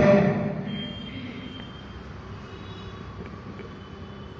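A man's voice trailing off in a reverberant room, then a steady low background rumble with a faint hum and no speech.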